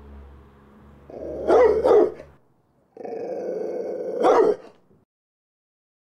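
A dog growling and barking in two bursts. Each burst builds to loud barks, the first about a second in and the second about three seconds in.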